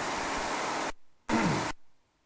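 Steady rushing cabin noise of a Piper J-3 Cub rolling across grass with its engine running, cutting off abruptly just under a second in; a second short burst follows about half a second later and stops just as suddenly.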